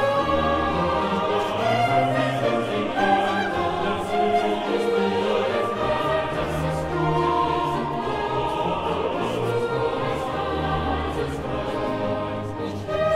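Boys' and men's choir singing with a baroque period-instrument orchestra: many voice parts moving together over a steady bass line, continuous and full throughout.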